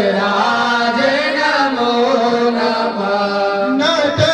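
Male priests chanting Sanskrit mantras of the Rudrabhishek rite into microphones, sung in long held notes that rise and fall in pitch.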